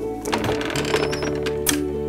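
A few sharp clicks and knocks from an old wooden chest with iron latches and hinges as its lid is opened, over background music with held notes.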